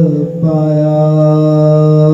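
A man's voice chanting a Sikh devotional recitation in long held notes on one steady pitch, with a brief break about half a second in.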